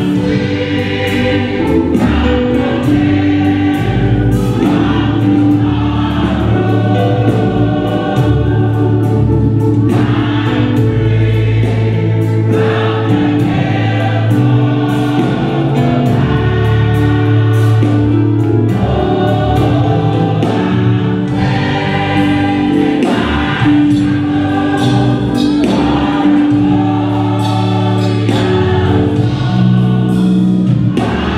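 Mixed church choir singing a gospel song with instrumental accompaniment, held low notes underneath and short sharp strokes keeping time throughout.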